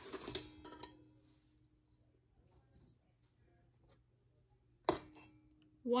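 Sugar sliding out of a small glass bowl into a stainless steel mixing bowl, with a faint ring from the steel bowl that fades over the first two seconds. Near the end there is one sharp clink of glass against the steel bowl, which rings briefly.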